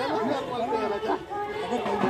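Several people's voices talking over one another: indistinct crowd chatter.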